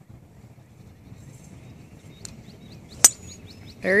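A golf club striking a ball in a full swing: one sharp crack about three seconds in. Faint bird chirps are heard around it.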